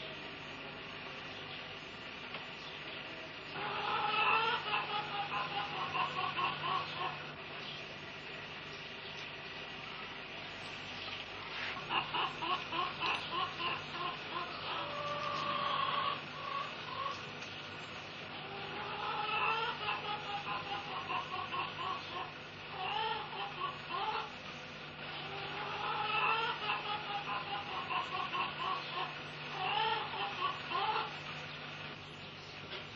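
Domestic hens clucking and cackling in repeated runs of rapid calls a few seconds long, over a steady low hum.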